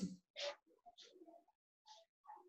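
Quiet room tone with faint bird calls in the background, heard as short scattered calls. There is one brief soft noise just under half a second in.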